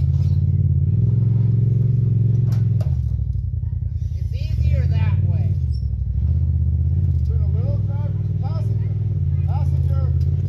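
Side-by-side off-road vehicle engine running steadily at low speed, dipping briefly about three seconds in and picking up again a little later. Faint voices talk in the background.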